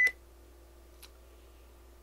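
A short, sharp blip with a brief high ring at the very start, then a faint tick about a second in, over a steady low electrical hum from the recording setup.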